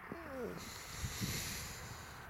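A man's voice trailing off in a drawn-out, falling hoot-like sound, then a faint steady hiss.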